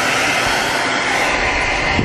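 Handheld hair dryer running, a steady rush of blown air, drying a dog's wet fur.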